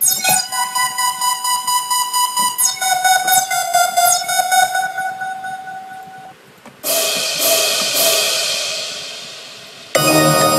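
Software synthesizer played from a MIDI keyboard: a sustained pitched synth tone with fast rhythmic pulsing, moving to a new note about two and a half seconds in and fading out. After a short dip, a brighter, hissier synth sound comes in with a few repeated hits and fades away.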